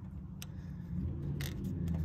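A low, steady engine-like rumble in the background grows louder toward the end. Over it come a few light clicks as a paper Weber base gasket is handled and set onto a metal carburetor adapter plate.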